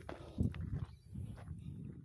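Footsteps on a rocky dirt and gravel track at walking pace, faint, about two steps a second.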